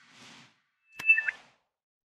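Logo-animation sound effects: a soft whoosh, then about a second in a sharp click with a second whoosh and a short two-note electronic chirp stepping down in pitch.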